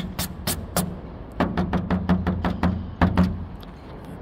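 A hand patting and wiping the dusty fabric skin of a Sherwood Ranger microlight's wing: a quick run of taps, about six a second, with a short break about a second in.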